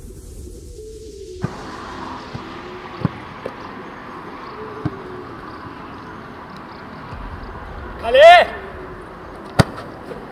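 A soccer ball struck hard in a free kick, a single sharp thud shortly before the end, over open-air pitch background with a few faint knocks. Just before the kick comes one loud shouted call that rises and falls.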